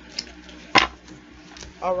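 Oracle cards being handled and drawn from the deck: a faint click, then one sharp knock about three-quarters of a second in.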